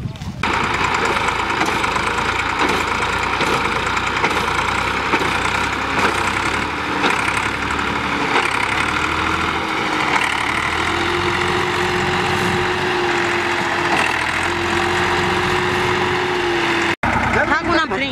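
Massey Ferguson tractor's diesel engine running hard under load as the tractor tries to drive out of deep mud, a steady loud noise with a faint held tone coming in about halfway through. Voices are mixed in, and the sound cuts out for an instant near the end.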